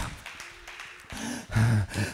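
The echo of a shouted phrase fades through a large room, then a man's voice makes a short, low vocal sound about one and a half seconds in.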